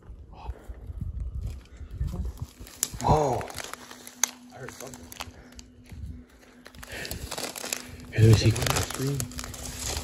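Footsteps rustling and crackling through dry weeds and brush. About three seconds in there is a short, sliding high-pitched cry, later described as 'like a scream'. Low voices come in near the end.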